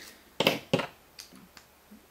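Small plastic clicks and taps as LEGO minifigure helmets are pulled off and swapped by hand: two sharper clicks close together about half a second in, then a few faint ticks.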